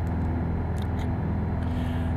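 Piper PA-28-180's four-cylinder Lycoming engine and propeller running steadily at climb power, a constant low drone heard from inside the cockpit.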